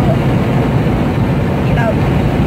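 Steady road and wind noise inside the cabin of a moving car, a constant low rumble with an even rush of air.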